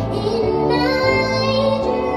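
An 11-year-old girl singing through a microphone, holding and bending long notes, over instrumental accompaniment.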